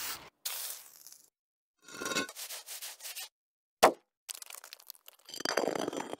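A quick run of short work-sound clips broken by silences: scraping and rubbing, a single sharp crack about four seconds in, and near the end a bench grinder grinding metal with a whine.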